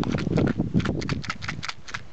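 Strong wind buffeting the camera microphone: a low rumble broken by a rapid, irregular run of crackling knocks.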